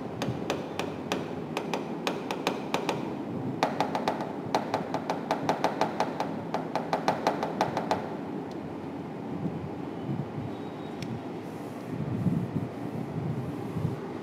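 Stylus tapping and clicking against an interactive display screen while writing by hand: a quick, irregular run of clicks, several a second, for about eight seconds, then only a few scattered ones.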